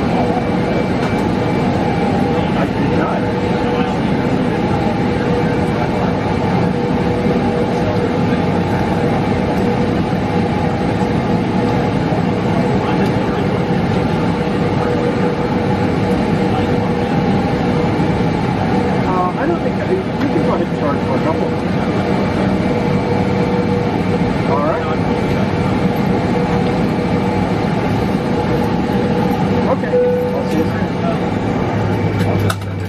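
Cabin noise of a Boeing 777 taxiing in at low speed with its engines at idle: a steady hum carrying a constant whine.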